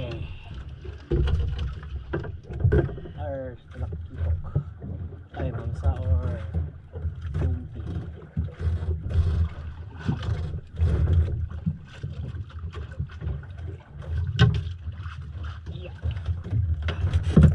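A fishing reel being cranked and a jigging rod worked by hand: irregular clicks and knocks of handling over a steady low rumble, with a few short voice sounds.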